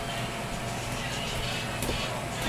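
Electric air blower of an inflatable bounce house running steadily, a constant whir with a low hum.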